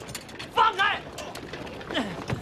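Two short shouted cries from a man about half a second in, over scattered clicks and knocks of a scuffle as men are seized and pulled away.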